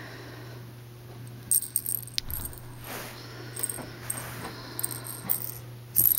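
A small bell jingling in short bursts, several times, as a kitten plays with a dangled toy, over a faint low hum.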